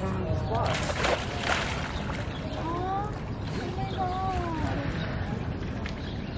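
A sea lion slipping off the rocks into its pool, a short splash of water about a second in, with distant people's voices rising and falling a little later.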